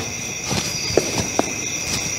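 Steady high-pitched cricket chirring, with four short soft knocks scattered through it.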